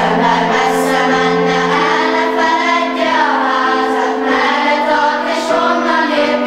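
A children's choir, mostly girls' voices, singing together over long held accompaniment notes.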